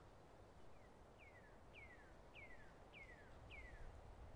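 Faint bird calls: a series of about six whistled notes, each falling in pitch, repeated about every 0.6 s from under a second in.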